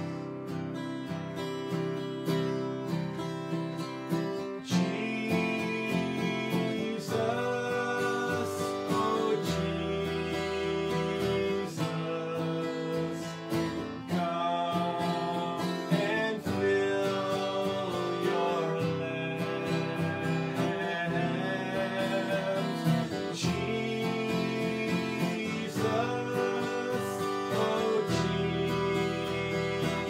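A man singing a worship chorus while strumming a steel-string acoustic guitar. The guitar plays alone at first, and the voice comes in about five seconds in.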